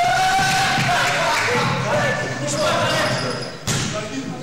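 Voices calling out in a large hall, with thuds on the wooden floor and mattresses and one sharp slap a little before the end.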